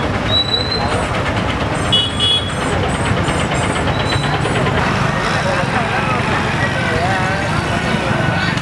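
Busy crowded street: many people talking at once and motor traffic passing, a steady dense din. Short high-pitched tones sound in the first few seconds, and a wavering pitched sound joins from about halfway.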